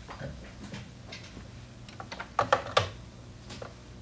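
A few short knocks and clicks, the loudest pair about two and a half seconds in.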